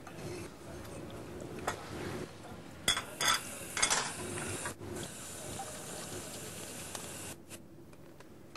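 Spoons and cutlery clinking against bowls and plates as people eat breakfast, with a few sharp clinks bunched about three to four seconds in. A steady hiss runs underneath.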